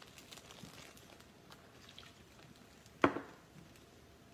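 Faint, scattered light clicks and taps of handling. About three seconds in, a short spoken 'kay' is the loudest sound.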